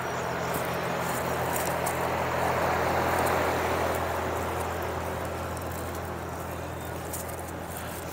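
A rushing sound, such as a passing vehicle makes, swells to a peak about three seconds in and fades away, over a steady low hum.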